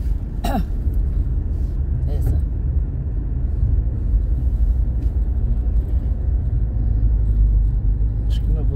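Steady low rumble of a car cruising on a paved highway, heard from inside the cabin: engine and tyre noise. A short voice sound falls in pitch about half a second in.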